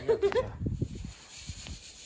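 Wind buffeting the microphone: an irregular low rumble of gusts, after a brief voiced sound like a laugh at the very start.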